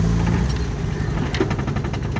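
A 1990 Honda Civic's freshly swapped-in D15 engine idling steadily, heard from inside the cabin.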